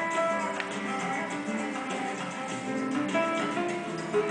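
Acoustic guitar playing, a continuous run of plucked notes and chords.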